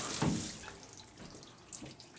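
Shower head spraying water onto a tiled shower with a steady hiss, shut off suddenly about half a second in, followed by a few faint drips.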